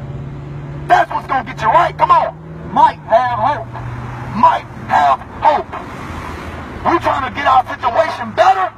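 Talking with indistinct words over the steady low hum of a motor vehicle engine running; the hum drops slightly in pitch about three seconds in.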